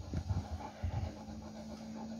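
Soft low thumps of a hand patting and rubbing a large dog's head, over a steady low hum that comes in just after the start.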